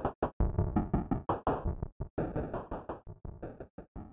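Live-coded electronic music from TidalCycles' 'supernoise' and 'super808' synths: a fast, uneven stream of short, noisy percussive hits with brief gaps between them. It gets quieter in the last second.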